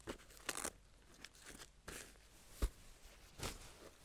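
1000D Cordura nylon backpack fabric and hook-and-loop flaps being handled: a series of short, separate rasps and rustles, with a dull knock about two and a half seconds in.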